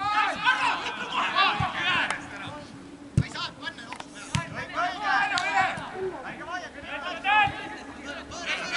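Footballers' voices shouting and calling to one another during open play, with a few sharp thuds of the ball being kicked, the clearest about three and four seconds in.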